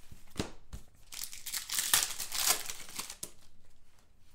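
Hands handling and sliding through a stack of trading cards, with crinkling and rustling that is loudest through the middle. A few sharp clicks come near the start.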